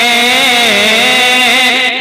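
A man singing a naat (Urdu devotional poem) through a microphone and PA, holding one long note that wavers gently in pitch and dips briefly about two thirds of a second in.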